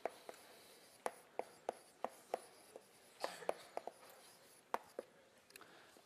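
Chalk writing on a blackboard: a quiet series of sharp, irregular taps and light scrapes.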